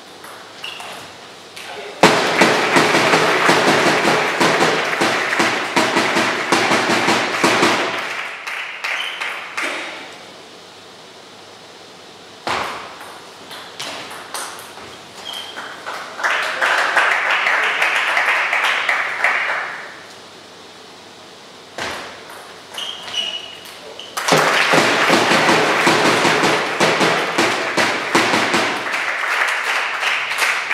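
Table tennis ball clicking off bats and table in short rallies, each point followed by a burst of crowd clapping and shouting lasting several seconds; this happens three times.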